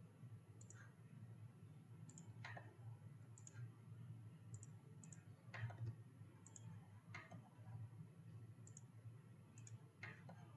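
Near silence with faint computer mouse clicks, many in quick pairs, every second or so over a low steady hum.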